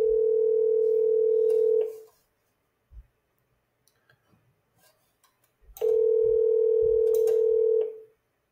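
Ringback tone of an outgoing phone call played through a phone's speaker: two rings, each a steady tone about two seconds long, about four seconds apart, while the called number rings.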